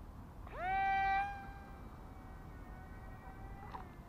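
Small electric motor and propeller of a supercapacitor-powered foam toy glider spinning up with a quickly rising whine, loud for about half a second, then a fainter steady whine as the plane is launched and flies off, ending with a short click near the end.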